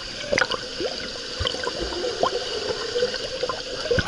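Swimming-pool water heard from below the surface: a steady muffled hiss with scattered bubble pops, gurgles and short chirps. A splash comes right at the end as the camera breaks the surface.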